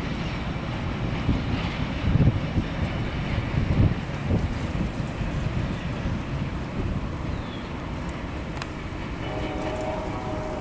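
Freight boxcars at the rear of a mixed freight train rolling away over the rails: steady wheel-on-rail noise with a few louder knocks about two and four seconds in, growing slightly quieter toward the end as the cars recede.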